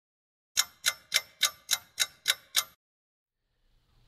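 A clock ticking: eight evenly spaced ticks, about three and a half a second, starting about half a second in and stopping after about two seconds.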